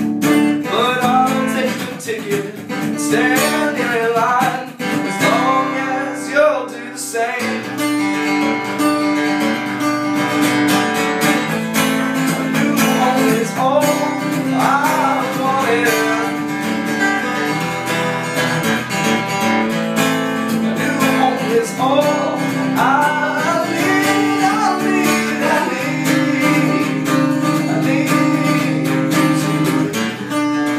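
Cutaway acoustic guitar strummed in a steady rhythm through an instrumental passage of a folk song.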